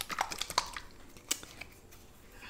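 Small sharp clicks and ticks of a plastic Samyang 2x Spicy sauce bottle being handled and its cap worked open, thickest in the first second and a half and sparse after.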